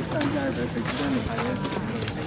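People talking, with short, low, wavering pitched sounds mixed in over a steady outdoor background.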